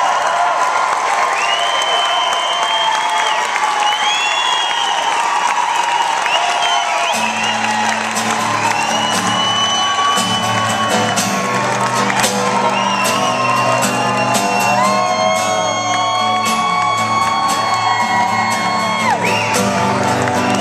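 Live band with acoustic guitars playing an instrumental stretch, a lead line of long held notes that swoop up into pitch over the strumming. A deeper low part joins about seven seconds in, and audience whoops and shouts rise over the music.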